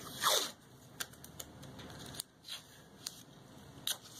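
Blue painter's tape pulled off the roll with a short zip just after the start, followed by scattered light clicks and taps from handling.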